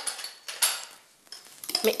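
A small spoon clinking and scraping against ceramic spice pots while pepper is spooned out: a sharp clink at the start, a short scrape a little over half a second in, then a few light taps.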